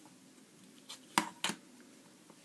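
A clear plastic ruler and a compass being handled and laid on a sheet of paper on a table, giving three short taps about a second in, the middle one loudest.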